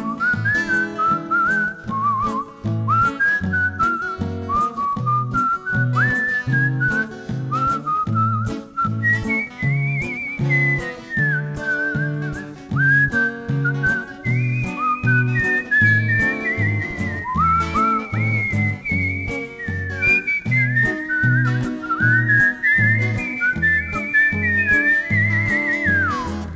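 Instrumental break in which a whistled melody with sliding, wavering notes is played as the solo over a band accompaniment with a steady beat of bass notes.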